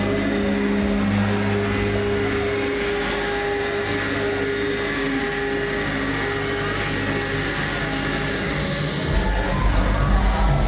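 Loud techno/house dance music on a club sound system: sustained synth tones with little beat, then heavy bass coming back in about nine seconds in.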